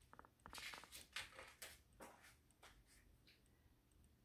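A picture-book page being turned by hand: faint paper rustles and slides, clustered from about half a second to two and a half seconds in.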